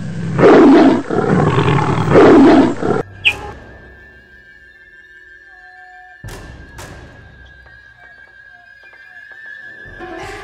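A big cat's roar sound effect, loud and rising to two peaks over about three seconds before cutting off abruptly. Background music follows with a steady high tone and two sharp hits about six seconds in.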